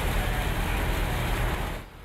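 Loud, steady rumbling noise at a large building fire at night, fading out near the end.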